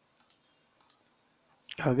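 A few faint, short computer mouse clicks in the first second, then a man starts speaking near the end.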